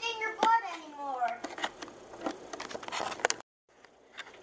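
Children's voices speaking, then a run of short clicks and taps, then the sound cuts out abruptly for a moment.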